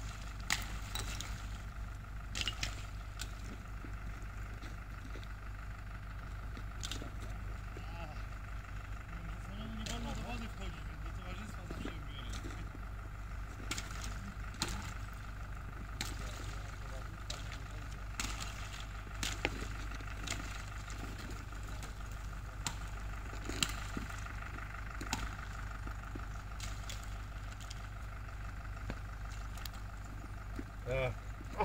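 Wind rumbling steadily on the microphone, with scattered small splashes and clicks as a person wades through icy, slushy lake water.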